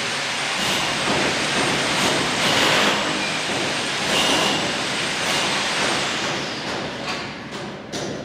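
Steady machine noise, like an engine or motor running, that eases off a little near the end.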